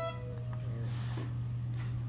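Acoustic guitar notes ringing out and fading away in the first half second, leaving a steady low hum.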